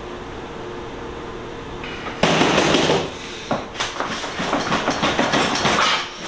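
A crisp packet crinkling and rustling: a loud burst of crinkling about two seconds in, then rapid crackles until the end.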